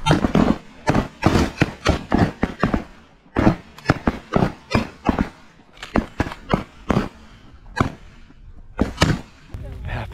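A ragged volley of shotgun blasts from several hunters firing together at a flock of sandhill cranes overhead. The shots come several a second for about seven seconds, then thin to a couple of last shots near the end.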